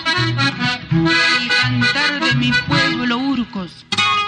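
Instrumental introduction of an Andean huayno played by an estudiantina, an accordion leading over rhythmic guitar and mandolin accompaniment with bass notes on the beat. The music drops away briefly just before the end.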